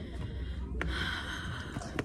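A woman's long, breathy sigh lasting about a second and a half, over a low steady background hum.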